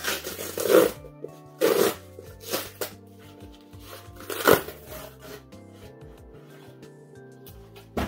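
Cardboard book mailer being torn open along its tear strip, in four short ripping bursts over the first five seconds, the loudest about halfway through, with background music throughout.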